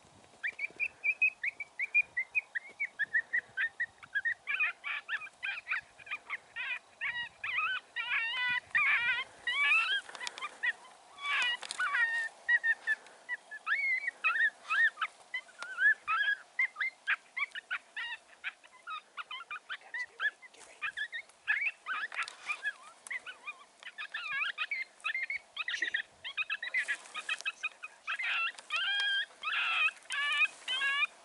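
Continuous series of short, high yelping and squealing distress calls, several a second, from a predator call used to lure a coyote.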